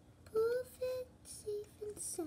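A child humming or vocalising a few short held notes, about four in a row, without words.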